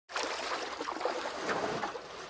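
Steady rushing, noise-like sound effect under a logo intro. It starts abruptly at the very beginning.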